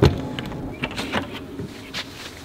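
A truck camper's exterior storage compartment door being unlatched and swung open: a sharp latch click right at the start, then a few lighter clicks and knocks as the hatch is handled.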